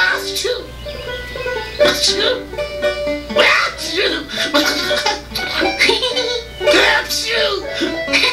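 A cartoon goose voiced by an actor sneezing several times over background music; the sneezes are played as the result of a cold from swimming at night.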